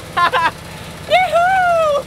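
McCormick Farmall Cub tractor's small four-cylinder engine idling with a low, even rumble, under a man's short laughs and a long whoop.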